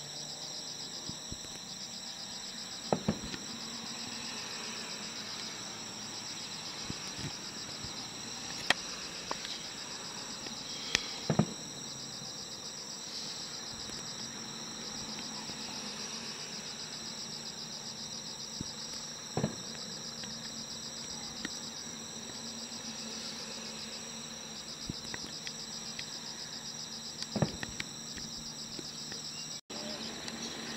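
Insects chirring steadily in a high, pulsing rhythm throughout. Over them come a few sharp distant bangs, roughly eight seconds apart, from fireworks.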